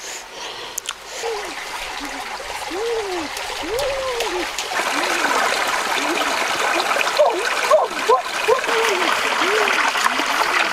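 Shallow rainforest stream trickling and gurgling over rocks, growing louder over the first half and then holding steady.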